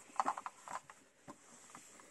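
Handling noise from a diecast model truck being turned in gloved hands: a quick run of small clicks and rubbing in the first second, fainter after that.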